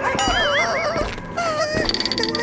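Two high, wavering whimpering cries, the first about a second long and the second shorter, over background music.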